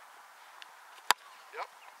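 A football being punted: one sharp crack of the foot striking the ball about a second in.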